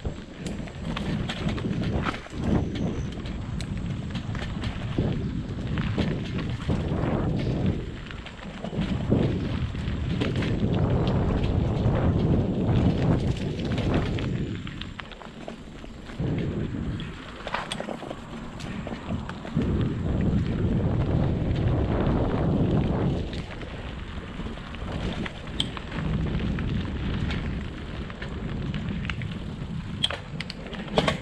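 A mountain bike riding fast along a dirt singletrack: a heavy low rumble of wind on the camera's microphone and the tyres on the trail, swelling and easing several times, with scattered clicks and rattles from the bike going over bumps.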